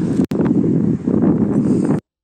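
Wind buffeting a phone's microphone outdoors: a loud, dense, low rush. It breaks off for an instant about a quarter second in and cuts off abruptly at the end.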